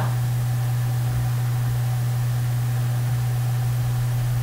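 Steady low electrical hum with a faint hiss, the background hum of a webcam recording, unchanging throughout.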